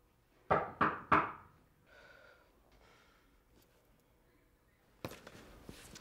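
Three quick knocks about a third of a second apart, each with a short ringing tail, then near quiet.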